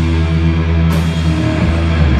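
Sludge/doom metal band playing live and loud: guitar and bass hold low sustained notes over the drum kit, with a cymbal crash about a second in.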